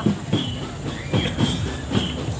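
A marching drum band heard at a distance: regular drum beats about every half second, with a short high tone recurring over them.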